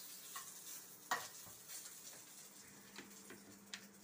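Chicken strips frying in a pan, a faint steady sizzle, with a few light clicks of a utensil against the pan.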